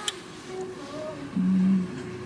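A woman's voice holding a short hummed filler sound, like "mmm" or "um", about one and a half seconds in, over a faint steady hum.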